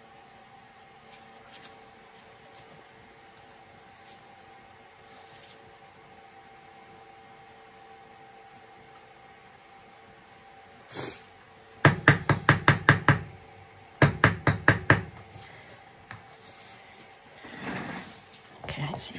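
Two quick runs of sharp knocks or rattles, about six a second and each lasting just over a second, come about twelve and fourteen seconds in. Before them there is only a faint steady room hum.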